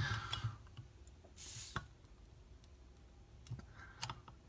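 A screwdriver tip clicking and scraping against a beer bottle's metal crown cap as it is worked under the cap's edge to pry it off, in a few small clicks. A brief hiss comes about a second and a half in.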